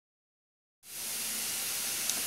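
Dead silence, then a little under a second in a steady hiss of recording noise starts abruptly.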